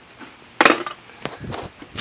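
One sharp knock a little over half a second in, then a few lighter taps and clicks, from tools and plastic intake parts being handled in the engine bay.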